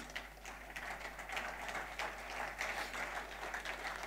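Faint, scattered audience applause: a soft haze of many light claps in a large hall.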